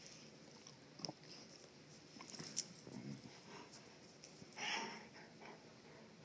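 Two dogs play-wrestling at close range, one a Doberman: quiet mouthing and scuffling noises with a few small clicks, and a short, louder breathy sound near the five-second mark.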